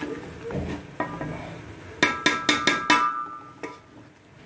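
Wooden spoon stirring a metal cooking pot of chopped apple gourd and chicken, knocking against the pot's side with short ringing clanks, a quick run of about five knocks two seconds in.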